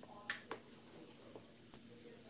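A few faint clicks and taps: two sharp ones close together about a third to half a second in, then lighter ticks, as a hand handles the recording device.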